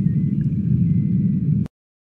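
Steady low mechanical rumble with a faint thin high tone over it, cutting off abruptly near the end.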